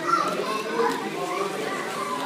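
Overlapping children's voices and chatter at an indoor swimming pool, with no clear words.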